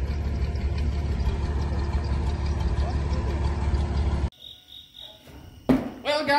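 A farm tractor's engine running steadily with a low rumble for about four seconds, then cut off abruptly to a quiet background with faint cricket chirps, and a single knock just before the end.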